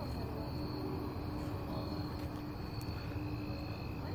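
Steady high trilling of night insects, with a low rumble underneath.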